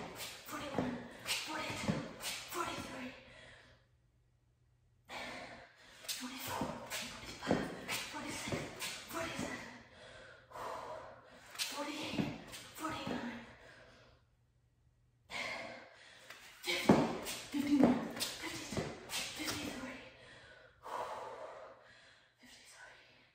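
A woman breathing hard in quick, forceful exhalations during fast V-mountain climbers, with the soft slaps of her sneakers landing on the exercise mat, about two to three strokes a second. The run breaks off twice for about a second.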